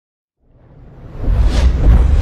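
Whoosh sound effect for a logo reveal, swelling up out of silence about half a second in and building into a deep rumble with short airy sweeps layered over it.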